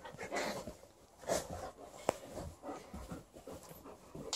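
Alaskan Malamute panting and snuffling in play, a few short breathy huffs, with one sharp click about halfway through.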